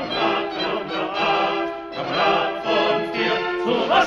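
Operetta orchestra playing an instrumental passage, with chords accented about once a second. It is heard on an old radio studio recording with dull, cut-off treble.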